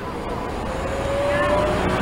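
Highway vehicle noise: a low engine and road rumble with a faint tone that rises slowly in pitch, growing steadily louder.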